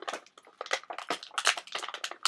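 Small plastic toy pieces being handled, a quick, irregular run of clicks and rustles.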